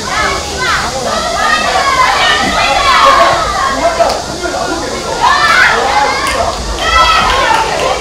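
Several young men's voices shouting and calling out over one another throughout, the way football players and their bench call during play.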